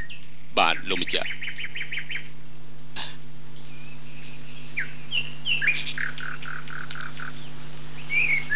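Birds chirping: a quick run of rapid chirps about a second in, then scattered calls and a short series of about six even notes later on, over a steady low hum.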